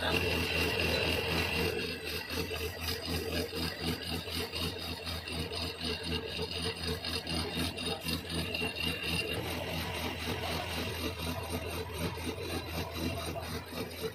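Metal lathe turning a steel oil expeller part, the cutting tool scraping steadily along the spinning workpiece over the constant hum of the machine, with a faint high whine that comes and goes.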